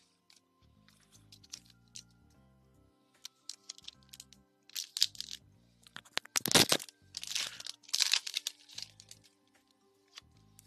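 Foil Pokémon booster pack wrapper crinkling and tearing in the hands, in several sharp crackly bursts through the second half, the loudest about six and a half seconds in. Quiet background music plays throughout.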